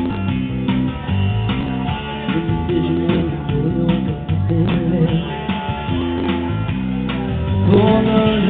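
Classic rock song performed live: guitar playing with a man singing over it.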